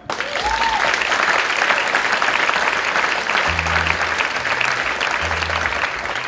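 Concert audience applauding at the end of a song: clapping breaks out all at once and carries on steadily.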